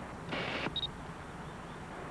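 Canon EOS 750 autofocus SLR focusing: its lens motor whirs briefly, then gives a short high electronic beep to confirm focus.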